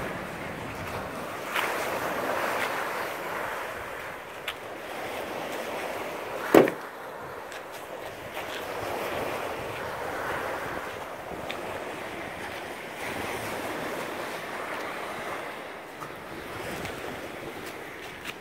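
Small waves breaking and washing up a sandy beach, the surf swelling and easing every few seconds, with wind on the microphone. A single sharp click about six and a half seconds in is the loudest sound.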